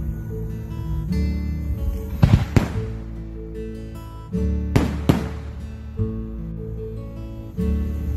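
Fireworks going off in two pairs of sharp bangs, a little after two seconds and again near five seconds, over continuous music.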